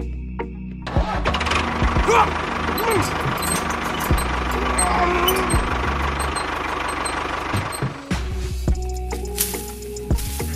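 Background music with an engine-like running noise over it from about a second in until about eight seconds, as a toy tractor pulls.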